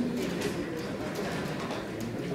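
Indistinct chatter of many students talking at once in pairs while working a problem, a steady hubbub of overlapping voices with no single voice standing out.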